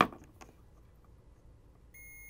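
A sharp click right at the start. Near the end, a Capacitor Wizard in-circuit ESR meter starts a steady, high single-tone beep as its probes rest across a capacitor on a circuit board: the capacitor reads good.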